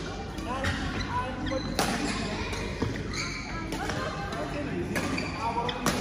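Badminton rally: a few sharp racket strikes on the shuttlecock, the clearest about two seconds in and again near the end, with short squeaks of shoes on the court floor. Voices chatter in the hall underneath.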